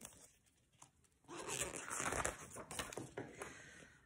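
Paper rustling as a picture-book page is handled and turned, a noisy rustle lasting about two and a half seconds that starts just over a second in.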